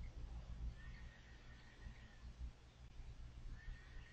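Near silence: faint room tone with a low steady hum, and a faint thin high tone heard twice, about a second in and again near the end.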